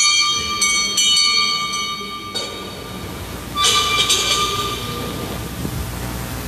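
Altar bell rung at the elevation of the consecrated host. A bright metallic ringing is shaken again twice in the first second and stops sharply after about two seconds. A second ring comes about three and a half seconds in and dies away.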